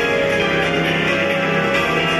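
Live concert music played over a PA: an instrumental passage of sustained chords, without singing.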